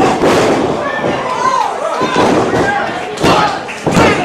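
Wrestlers' bodies slamming onto a wrestling ring's canvas mat: a heavy thud at the start, another about three seconds in and one just before the end. People are shouting between the impacts.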